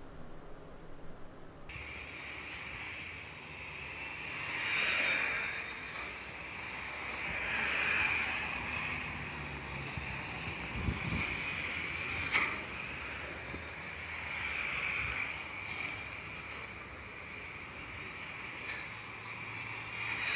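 1/10-scale electric RC touring cars driving laps on a track: a high motor whine that rises and falls in pitch, with tyre noise swelling and fading as cars pass, every few seconds. It starts suddenly about two seconds in.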